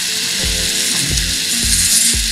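Pen-style rotary tool grinding a plastic model part with a small sanding bit: a steady high hiss. It plays over background music with a steady beat.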